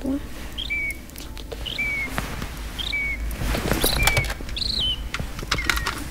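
A bird calling a short chirp about once a second, each a quick rising note dropping to a brief level tone. Light clicks and taps come between the calls and grow busier near the end.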